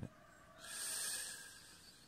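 A person's breath near the microphone: a short hiss about a second long, starting about half a second in.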